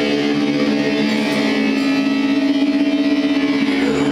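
A steady musical drone in D: layered sustained tones, with one strong held note and a softer lower note pulsing gently beneath it.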